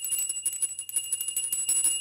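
A small brass hand bell rung rapidly over and over, giving a high, steady ringing tone.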